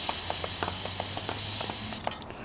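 Compressed air hissing steadily out of a bicycle tyre's valve as the tyre, pumped to about 70 PSI, is let down. The hiss cuts off suddenly at the end.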